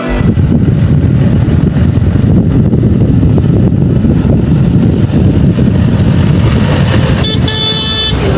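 John Deere tractor engine running loud and close, a heavy low rumble, with a brief higher-pitched sound near the end.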